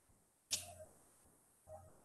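Near silence in a pause between spoken phrases, broken by one short faint sound about half a second in and a fainter one near the end.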